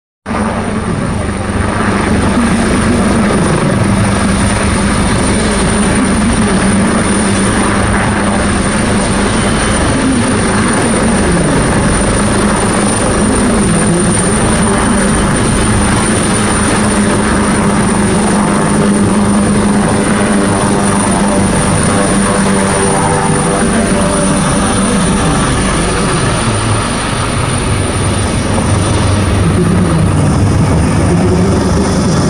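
Helicopter hovering low over the sea: loud, steady rotor and engine noise with a thin high whine above it, unchanging throughout.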